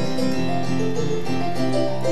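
Yamaha Motif XS8 keyboard played live: an instrumental run of chords and melody notes, the pitch changing every fraction of a second.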